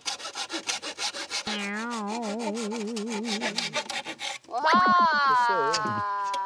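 Hand saw cutting through a green bamboo pole in quick back-and-forth strokes, stopping about four seconds in as the cut finishes. A wavering pitched tone sounds under the sawing midway. Near the end comes a loud pitched tone that falls in pitch and is the loudest sound.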